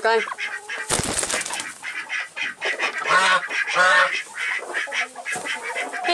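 Ducks in a coop calling in short, repeated calls that come in clusters, with a brief loud clatter about a second in.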